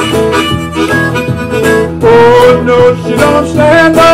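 Blues harmonica playing bending, wailing fills, with one long held note about halfway through, over a strummed acoustic guitar.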